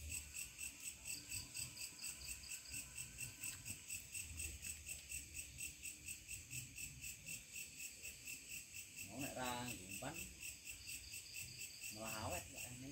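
Crickets chirping in a steady, even rhythm of about four high-pitched pulses a second. A brief faint voice is heard about nine seconds in.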